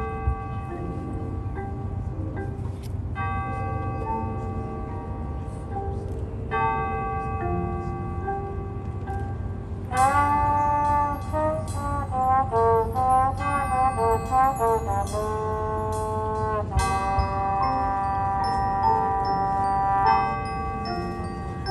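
High school marching band playing its field show: brass holding sustained chords over the front ensemble's mallet percussion. About halfway through the brass comes in much louder with moving, sliding notes, then settles into a long held chord near the end.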